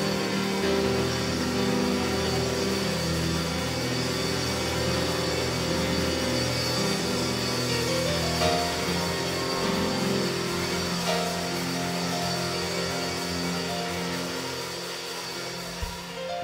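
Church keyboard music: long held chords that shift every few seconds.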